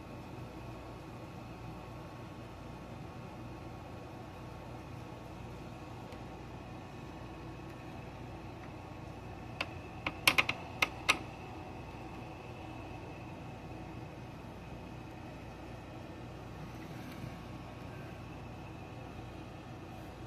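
Steady background hiss with a faint hum, broken about halfway through by a quick run of about six sharp clicks within a second and a half.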